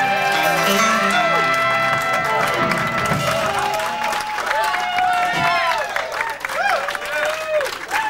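A Dixieland jazz band with horns, including trombone, holds a final chord that dies away about three seconds in. Audience applause with whoops and shouting voices follows.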